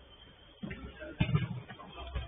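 A football being kicked on artificial turf: a couple of short thumps, the sharpest about a second in.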